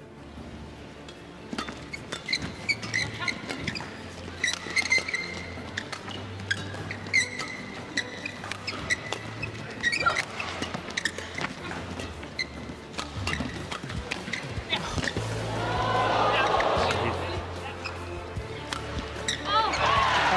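Badminton play in a sports hall: short squeaks of shoes on the court floor and sharp racket strikes on the shuttlecock, over music. A swell of voices rises about three-quarters of the way through.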